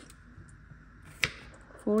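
A kitchen knife slicing a garlic clove on a wooden cutting board: one sharp knock of the blade on the board a little over a second in, with a couple of faint ticks before it.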